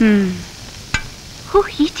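Food frying in a pan on a kitchen stove, a steady low sizzle, with a single sharp clink of a utensil about a second in.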